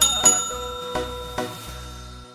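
A bright bell chime sound effect, struck once at the start and ringing on as it slowly fades. It sits over the tail of a folk song whose beat carries on and then fades out.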